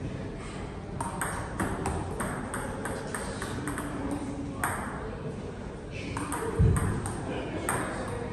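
Table tennis ball clicking sharply back and forth off the paddles and table in quick runs of rally hits, with a gap of a second or so in the middle. A dull low thump a little after six seconds is the loudest sound.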